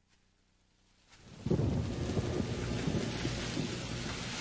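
Thunderstorm sound effect: after about a second of near silence, noise swells and a crackling rumble of thunder with a rain-like hiss comes in suddenly about a second and a half in, then runs on steadily.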